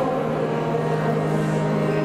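Religious choral music, holding one chord steadily.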